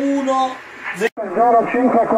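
Speech only: a man's voice, then a brief sharp dropout just past a second in, after which a voice comes over a radio receiver's speaker with its high end cut off.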